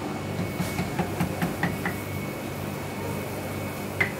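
A metal scoop clinks against a stainless steel pan of waffle batter, about six quick light taps in the first half, over a steady machine hum with a thin high whine.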